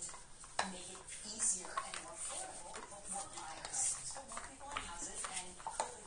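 Newborn American Pit Bull Terrier puppies suckling at their mother, with irregular small wet clicks and smacks, under a faint talking voice in the background.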